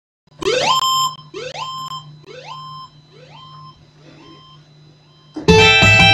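An electronic rising sweep played back from music software, repeated about once a second and fading like an echo. About five and a half seconds in, a loud rumba backing track with guitar and keyboard starts.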